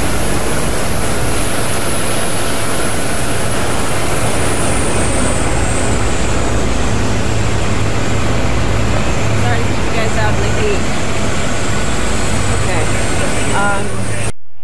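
Jet aircraft engines running loud and steady, with a high whine that slides down in pitch about four to six seconds in.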